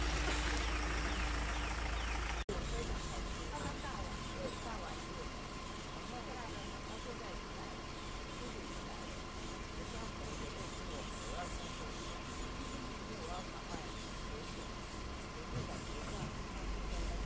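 A vehicle engine idling under low, indistinct voices, with a brief dropout about two and a half seconds in where the footage is cut.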